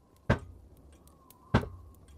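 Sharp knocks on a door: two strikes about a second and a quarter apart, each with a short low boom after it, part of a slow series of three.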